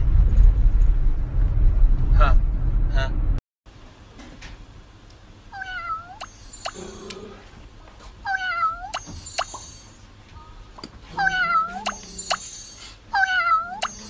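Low rumble inside a moving car for the first few seconds, cutting off abruptly; then four meows a few seconds apart, each dipping and then rising in pitch.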